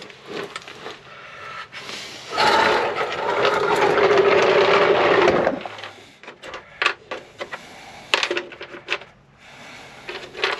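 Small clicks and rattles of hand work: wire being handled and parts picked from a plastic tool organizer. About two seconds in, a loud, steady noise of unclear source lasts about three seconds, then stops.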